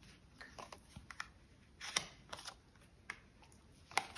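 Oracle cards being picked up and laid down on a cloth-covered table: faint, scattered soft clicks and brushes of card, the loudest about two seconds in.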